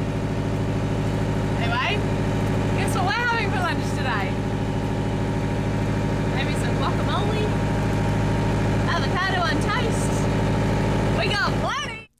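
A sailboat's inboard engine running steadily under way, a constant unchanging drone heard inside the cabin, with a few short bits of a woman's voice over it.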